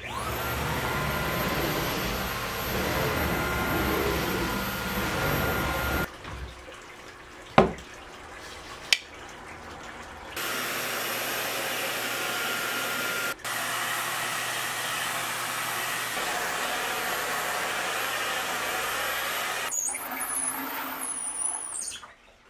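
Vacuum cleaner running with a steady high whine, its motor spinning up at the start, as a brush nozzle works along a sliding door's track. The run breaks off for about four seconds mid-way, with two sharp clicks in the quieter stretch, then carries on.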